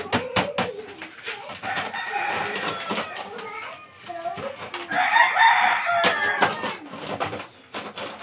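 Chickens calling in two stretches, about a second and a half in and louder again about five seconds in, the second like a rooster's crow. A few sharp knocks come at the very start as a bag of ice is struck against the ice cream maker's tub.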